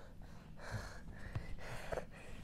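A person breathing out audibly close to a microphone: two short breathy exhales, about half a second in and near the end, with a few faint clicks.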